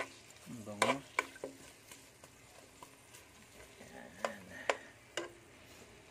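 Metal spoon stirring sliced onions and ginger in hot olive oil in a nonstick pot, clicking and scraping against the pan in a few sharp knocks about a second in and again around four to five seconds in, over a faint sizzle of the oil.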